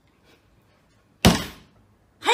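A husky puppy digging in a flowerpot: a single sharp thunk about a second and a quarter in, dying away within half a second.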